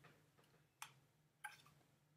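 Near silence broken by two faint clicks, a little under a second apart, from a cardboard board book being handled as its flap is folded shut.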